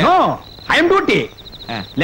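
Crickets chirping in a steady high pulsing trill under a man's speech, standing out alone near the end as the speech pauses.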